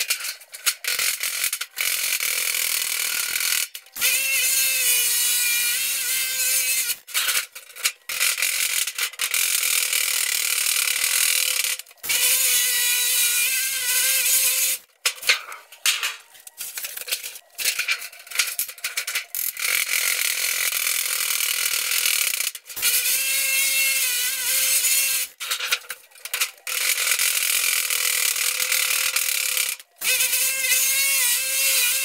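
Galvanized sheet-metal ductwork being assembled, played back fast-forward: a drill whining in wavering bursts and sheet metal rattling and clattering. The sound runs in many short segments with abrupt cuts between them.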